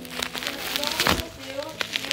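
Plastic wrapping crinkling, with a few short knocks, as the parts of a new folding wheelchair are handled and unwrapped; the loudest knock comes about a second in.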